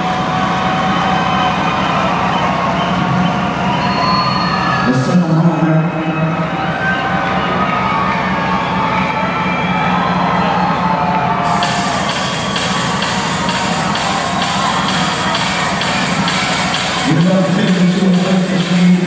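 Loud electronic dance music played live over a festival sound system, with a heavy steady bass line and a large crowd cheering. The bass breaks off briefly about five seconds in, and a brighter, hissier layer joins about eleven seconds in.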